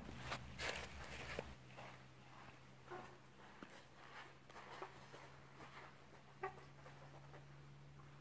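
Faint footsteps and shuffling on artificial turf as a person and a small dog move about, with scattered light taps and rustles, the loudest in the first second, over a steady low hum.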